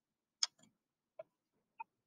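Three faint, sharp clicks under a second apart, the first the loudest: a computer mouse or key clicking to advance a presentation slide.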